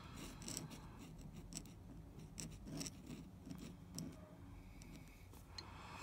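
A finger-shaped steel dip-pen nib scratching faintly across paper in short, irregular strokes as it writes cursive letters.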